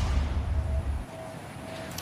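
News broadcast transition sound effect: a whoosh going into a low boom that rumbles on and fades out about a second in, leaving faint background noise.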